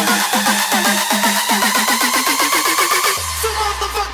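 Rawstyle hardstyle music from a DJ mix. A build-up of rapid, evenly repeated hits runs under a rising synth sweep, then breaks about three seconds in into a deep, sustained bass note.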